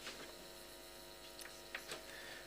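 Faint steady electrical hum with a buzz of many evenly spaced overtones, with a couple of small clicks near the end.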